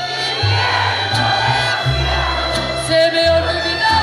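Live mariachi band playing: a section of violins carrying the melody over deep bass notes that change about once a second, with the audience cheering.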